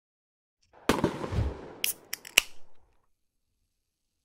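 Logo-intro sound effect: a sharp hit a little under a second in with a short rushing tail, followed by three quick snapping clicks, the last the loudest.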